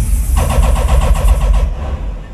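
Dancehall music played loud over a sound system with heavy bass; for about a second a rapid stuttering pulse, about nine a second, runs over it, and the level drops away near the end.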